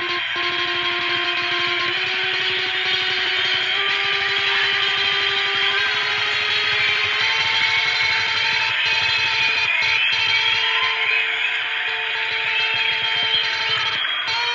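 Electric guitar played through effects with heavy echo: long held notes that step to a new pitch every second or two, with a wavering higher line in the middle.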